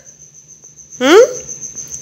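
A steady high-pitched insect trill, typical of a cricket, with one short rising vocal sound about a second in.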